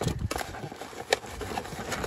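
Papers and owner's manual booklets being shuffled by hand inside a truck's plastic glove box, with a rustle and several light clicks and knocks, the strongest about a second in.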